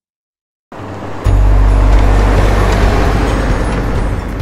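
After a brief silence, a military Humvee-type vehicle's engine comes in as a steady, deep rumble, loud from about a second in.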